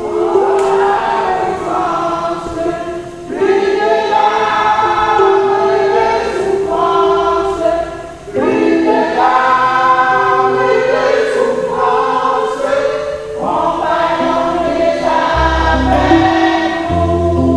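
A women's church choir singing in unison and harmony, in phrases of about five seconds with short breaks for breath between them.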